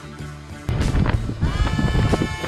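Background music that cuts off abruptly about two-thirds of a second in. Louder wind buffeting the camera microphone takes over.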